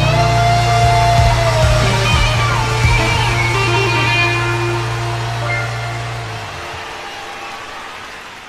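A live rock band's closing chord ringing out: an electric guitar holds a high note and bends it down, over a held low bass note that stops about six seconds in. The sound then fades away.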